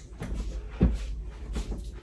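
A person moving about on a carpeted floor: faint knocks and rustles, with one soft thump a little under a second in, over a low steady hum.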